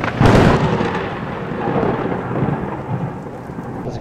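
A sudden crack of thunder just after the start, followed by a rumble that slowly fades over about three seconds.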